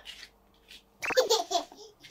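Toddler laughing, a short burst of giggling about halfway through, after a few small breathy sounds.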